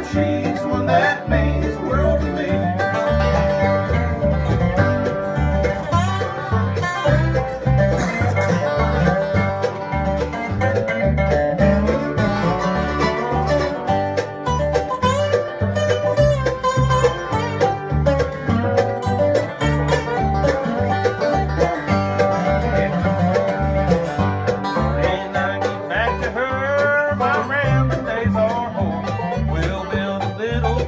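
Bluegrass band playing an instrumental break: banjo picking with acoustic guitar, over a steady plucked upright-bass beat.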